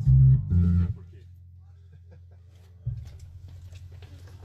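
A few short, low electric bass notes through an amplifier in the first second, then a steady low amplifier hum, with a single thump nearly three seconds in.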